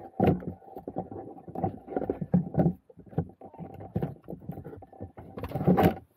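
Close handling noise from an Arrma Vorteks brushed RC car being handled right by the microphone: irregular plastic knocks, scrapes and rustles, with a louder clatter near the end as it is set down on the pavement.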